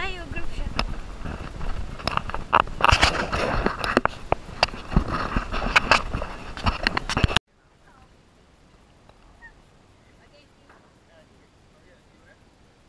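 Wind rumbling on a handheld camera's microphone, with irregular knocks and rustles of the camera being carried, loud for about seven seconds and then cut off abruptly, leaving only a faint background. A person's drawn-out call sounds briefly at the very start.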